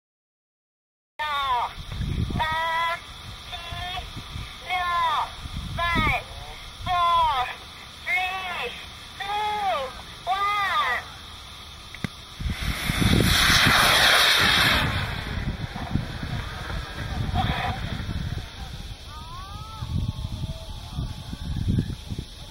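Voices shouting a launch countdown, about one count a second. Then a small rocket motor ignites with a loud rushing hiss lasting about two and a half seconds, followed by wind noise on the microphone.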